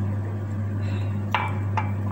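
Two light clicks close together about a second and a half in, a clear plastic drinking cup being set down on a tiled tabletop, over a steady low hum.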